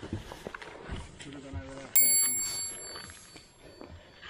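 A bright metallic ring, like a small bell, sounds once about two seconds in and fades over about a second, over soft handling noise.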